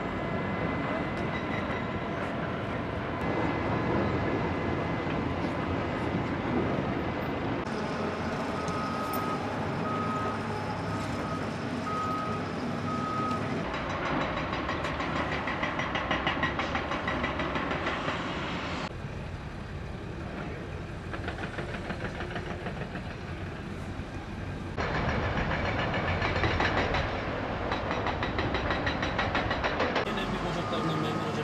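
Heavy quarry machinery such as excavators and loaders running in a steady mechanical din that shifts abruptly several times. A reversing alarm beeps about once a second for several seconds near the first third.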